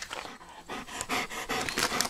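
Dog panting, about four to five quick breaths a second, starting about half a second in.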